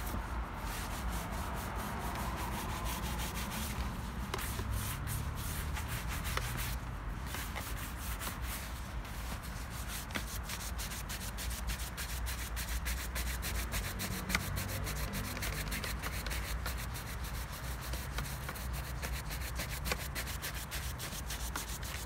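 Bristle shoe brush buffing a waxed black leather shoe: rapid, continuous back-and-forth brushing strokes that bring the polish up to a mirror shine.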